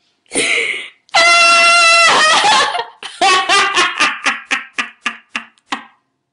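A man laughing hard: a sharp breath, then a long high-pitched squeal of about a second that trails off, then a run of short rhythmic laughs, about three a second, fading toward the end.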